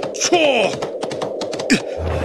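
Animated-film battle soundtrack: short shouted cries that fall in pitch, over a rapid clatter of galloping hooves.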